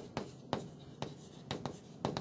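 Chalk writing on a chalkboard: a string of short taps and scratches as the chalk strikes and drags across the board, spaced irregularly through the stretch.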